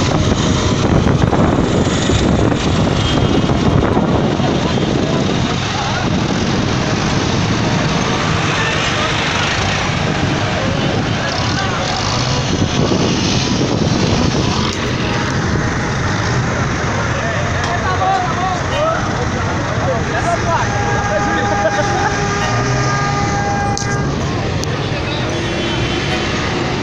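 Farm tractor engines running as a line of tractors idles and drives along a road, a continuous loud engine rumble with people's voices mixed in.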